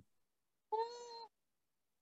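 A single faint cat meow, about half a second long, coming through a participant's open microphone on a video call.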